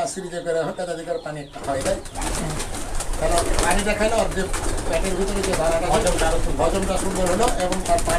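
Domestic pigeons cooing, a continuous wavering chorus. A man's voice is heard briefly at the start, and a steady low rumble runs underneath from about two seconds in.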